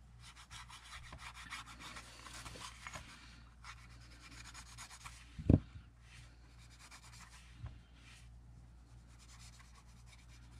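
Stiff paintbrush scrubbing gilding wax onto the edges of a paper collage card: quick, scratchy rubbing of bristles on paper, busiest in the first half. A single low thump about halfway through is the loudest sound.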